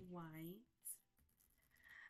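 A woman's voice finishes a word. Then near silence, broken about a second in by one brief soft rustle of a card deck being handled.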